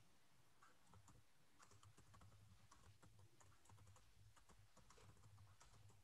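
Near silence, with faint, scattered small clicks.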